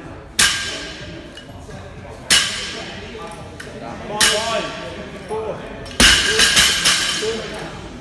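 Loaded barbell with small steel plates, bumper plates and clips clanking: four sharp metallic clanks about two seconds apart, each ringing briefly, then a quick run of rattling knocks about six seconds in.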